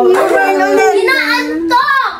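Children's high-pitched voices in a drawn-out, sing-song vocalizing without words, two voices overlapping in the first second.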